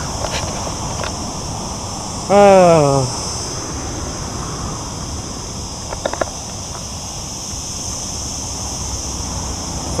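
Steady roadside noise of wind and passing traffic beside a highway, with one short, loud call from a voice, falling in pitch, about two seconds in.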